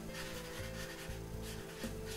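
Marker pen rubbing on flip-chart paper as a word is written, over quiet background music with held notes.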